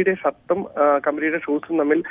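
Speech only: a man talking in Malayalam over a telephone line, his voice thin and cut off above the narrow phone band.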